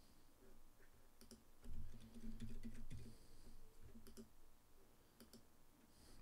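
Sparse, light clicks of a computer keyboard and mouse, a few single or paired taps spread over several seconds.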